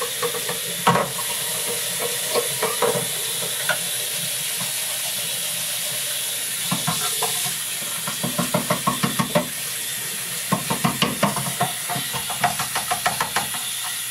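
Tap water running into a bathroom sink while a plastic aquarium filter housing is rinsed under it: a steady hiss of water, with bouts of rapid splashing and clatter against the plastic in the second half.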